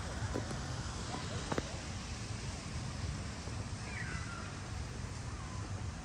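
Outdoor park ambience heard while walking: a steady low rumble with faint far-off voices, a couple of light clicks, and a short falling chirp about four seconds in.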